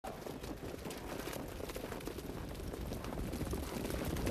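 Racetrack sound as a harness-racing field of trotters and the mobile starting-gate truck move at speed: a steady rushing noise with many faint, irregular ticks.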